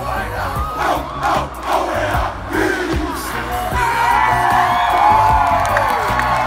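A large group of football players shouting a Polynesian war-dance chant in unison, in rhythmic bursts about twice a second. A little past halfway the chant ends and the crowd breaks into cheering and whoops.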